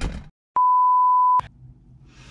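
A single steady electronic beep at about 1 kHz, lasting just under a second and starting and stopping abruptly. It follows a moment of dead silence, just after rustling handling noise fades out.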